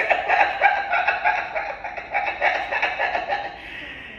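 A woman laughing: a long run of quick laugh pulses that trails off near the end.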